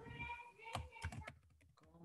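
Faint computer keyboard typing: a handful of separate keystrokes in the second half as an item number is entered. In the first second there is a held hum from a voice.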